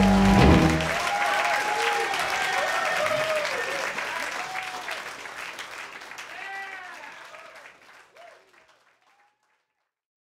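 A live rock band's final held chord stops about half a second in, giving way to audience applause and cheering with whistles, which fades out steadily over the next several seconds.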